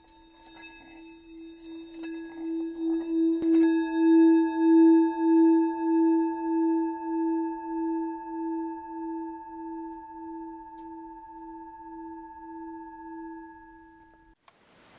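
Singing bowl rubbed around its rim: a steady ringing tone that swells with a pulsing wobble over the first few seconds, with a scratchy rubbing noise that stops about three and a half seconds in. The bowl then rings on, slowly fading, still wobbling.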